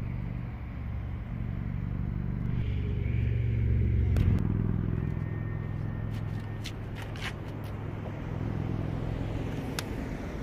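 Low, steady vehicle hum that swells to a peak about four seconds in and then eases off. Several sharp clicks and taps in the second half come from handling the car's open rear door.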